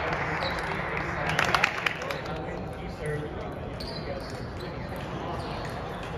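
Large-hall ambience of indistinct voices, with a short run of sharp table tennis ball clicks about a second and a half in.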